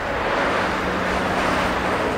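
Road traffic passing: cars and vans driving by on a paved road, a steady noise of engines and tyres.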